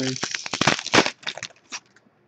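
Foil wrapper of a trading-card pack crinkling and tearing as hands open it: a dense crackle for about the first second, then a few lighter rustles.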